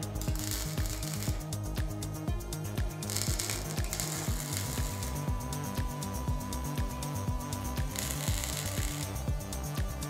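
Three short bursts of MIG welder crackle, each about a second long, as steel bar stock is tack-welded, over background music with a steady beat.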